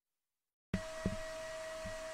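Dead silence, then about two-thirds of a second in a steady hum with a faint high whine comes in: the cooling fans of a bare-metal network switch running as it reboots.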